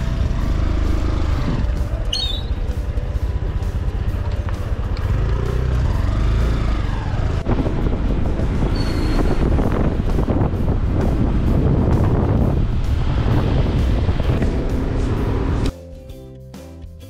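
Wind rushing over the microphone with the engine and road noise of a motorbike riding through traffic, a steady low rumble. Music cuts in abruptly right at the end.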